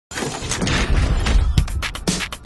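Television programme intro jingle: a dense, noisy swell with deep bass, then a fast electronic beat of sharp hits starting about one and a half seconds in.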